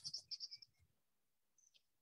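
Faint bird chirping: a quick run of short, high chirps in the first half-second or so, then a single fainter, falling chirp near the end, with faint low knocks beneath.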